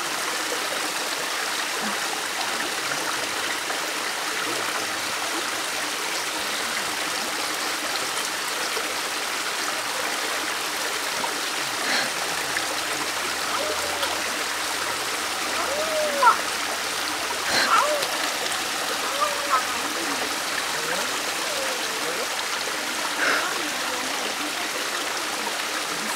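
Steady rush of a rocky mountain stream running over stones, with a few short voice sounds about halfway through and near the end.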